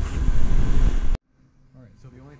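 Steady, loud background noise with a strong low rumble, like air handling, that cuts off abruptly about a second in. A faint voice begins shortly after.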